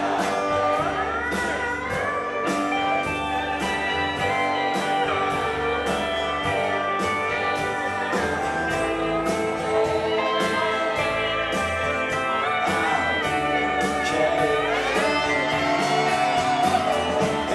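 Live country band playing an instrumental passage without vocals: guitars, bass and a steady drum beat, with a lead line that bends upward in pitch about a second in and again near the end.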